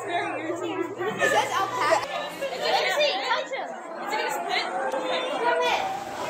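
Overlapping chatter of several young girls' voices talking at once, no words clear, with a low steady hum under the first two seconds.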